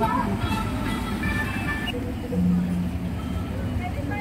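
Several people talking, with faint music, over a steady low rumble of vehicle engines. A short steady hum sounds a little past halfway.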